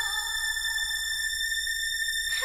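Trance music in a break without a beat: a single high electronic synth tone held steady with its overtones.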